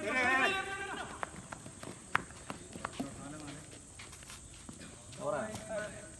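A cricket player's loud, wavering shout right after the shot, followed by scattered light taps of feet running on the dirt pitch, and a second, shorter shout near the end.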